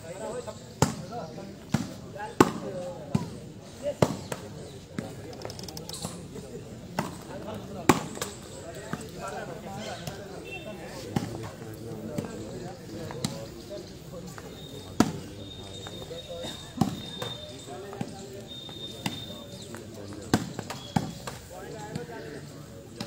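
A volleyball being struck hard by players' hands again and again during rallies: sharp smacks at irregular intervals, over a crowd chattering.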